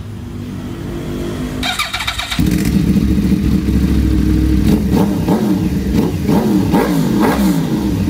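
Motorcycle engine running steadily, getting louder about two and a half seconds in, then revved in several quick blips, its pitch rising and falling each time.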